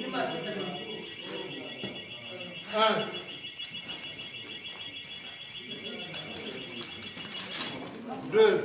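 A steady high-pitched pulsing tone runs throughout, over murmured voices in the room, with a brief louder sound about three seconds in.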